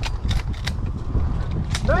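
Wind rumbling on the microphone in an open field, with a few sharp clicks through it and no gunshot.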